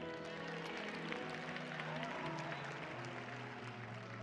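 Soft background music of held keyboard chords, the bass note changing near the end, with scattered audience clapping over it.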